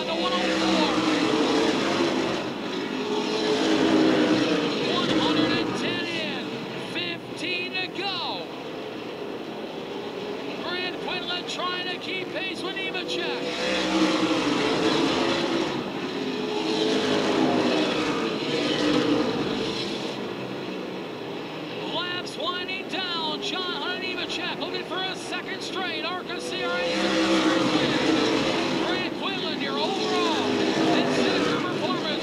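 A pack of V8 late model stock cars racing on a short oval. The engines rise and fall in pitch through the corners, and the sound swells each time the pack comes past and fades as it goes away, about every twelve to thirteen seconds.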